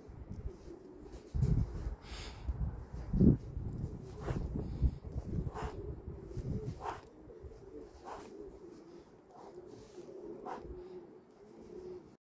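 Pigeons cooing steadily, with low rumbles on the microphone in the first half and a soft click repeating about every second and a quarter from about four seconds in.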